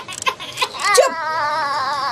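Baby crying: a few short sobbing catches, then about a second in a long, wavering wail.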